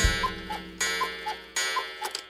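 Cartoon sound effects: a clock's tick-tock, with higher and lower ticks alternating about twice a second, under three louder hits that ring out and fade, about three-quarters of a second apart.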